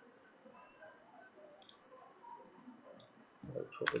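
Light computer mouse clicks over faint room noise, a couple of isolated ones and then a louder cluster near the end.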